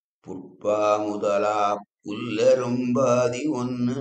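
A man reciting a Sanskrit verse in a chanting tone, holding the pitch steady on each phrase, with a short break about two seconds in.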